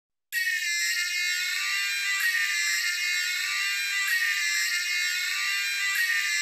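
Music: the opening of a Russian pop song, high bright synthesizer chords with no bass, starting sharply out of silence a moment in.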